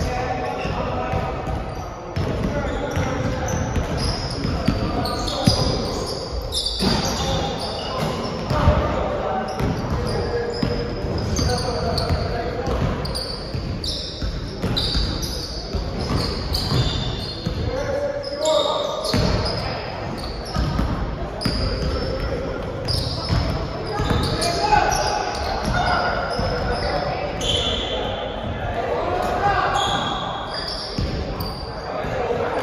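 A basketball bouncing repeatedly on a hardwood court during a pickup game, with players' voices echoing through a large gym.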